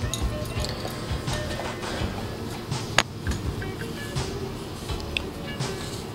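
Background music, with a few light clinks of a metal part being handled and wiped with a rag, and one sharp click about halfway through.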